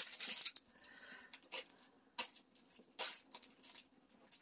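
Scattered rustling and crinkling of gift packaging and a large sack being handled and rummaged through, in short irregular crackles.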